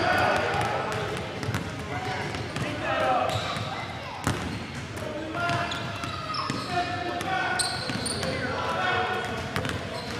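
A basketball bouncing on a hardwood gym floor, a few sharp thuds, over voices echoing in the large hall.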